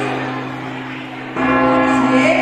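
Bell chimes: a stroke fades away, and a new one is struck about a second and a half in and rings on, about three seconds after the previous stroke. These are the measured New Year's Eve midnight chimes (campanadas) that mark the twelve grapes.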